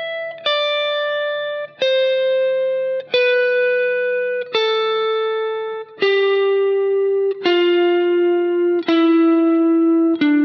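Electric guitar, a Fender Stratocaster, playing a major scale slowly one picked note at a time. The scale descends step by step, with a new note about every second and a half, each note ringing until the next one is picked. These are the notes of shape 2 of the C major scale, played around the 10th fret.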